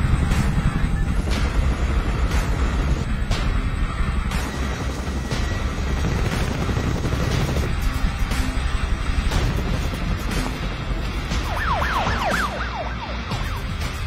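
Loud, steady low rumble of a military helicopter's engine and rotors heard from inside the cabin, under film score music.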